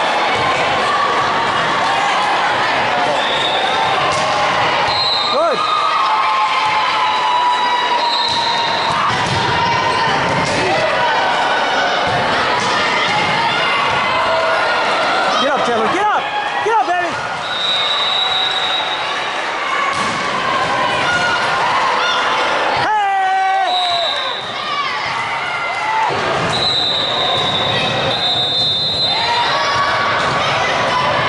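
Indoor volleyball match in a large echoing gym: a steady din of voices calling out, volleyball hits and bounces on the court, and several short high-pitched squeals.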